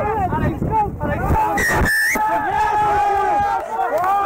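Rugby players shouting calls around a scrum, with one long held shout. A short, shrill, steady tone cuts through about a second and a half in.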